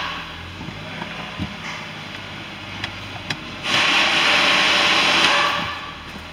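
Windshield washer spraying fluid onto the glass: a loud, even hiss that starts a little past the middle and cuts off near the end. Under it runs the low, steady hum of the 1.8-litre four-cylinder engine idling, with a few light clicks before the spray.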